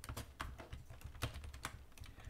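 Typing on a computer keyboard: about ten irregular keystrokes over a low steady hum.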